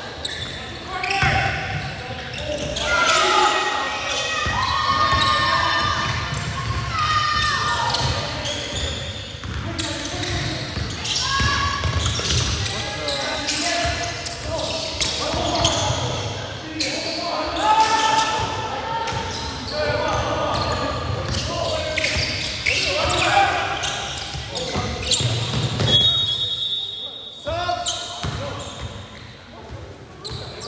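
Basketball being dribbled and bounced on a hardwood gym floor during play, amid voices talking and calling out in a large gymnasium. A short high whistle blast sounds near the end.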